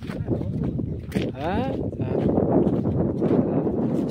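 Wind buffeting a phone's microphone, a loud, steady rumbling noise, with a short rising call from a voice about a second and a half in.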